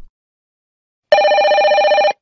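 A telephone ringing once: a warbling electronic ring of about a second that starts about a second in and stops abruptly. It is the ring of a call being placed, answered right after.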